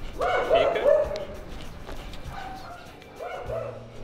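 Golden retriever giving a run of short high-pitched calls with a wavering pitch in the first second, then two briefer ones later.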